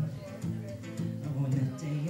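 Acoustic guitar strummed in steady chords, played live.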